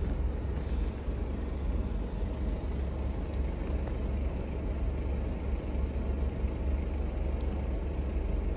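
Steady low rumble inside a car's cabin as it sits in stopped, bumper-to-bumper traffic: the engine idling under the hum of the surrounding traffic.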